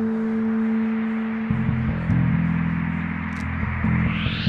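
Instrumental passage from a live band: a held note dies away, and about a second and a half in low sustained keyboard tones come in.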